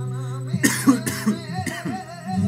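A man coughing in a quick run of several coughs, starting about half a second in, over flamenco guitar music.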